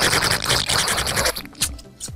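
A woman sucking air hard through pursed lips against her hand: one long, noisy slurp that fades after about a second and a half, acting out sucking a stuck oyster from its shell. A short click follows near the end.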